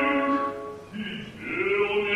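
Operatic male singing: long held notes with vibrato, a short drop in level about a second in, then a new, higher held note.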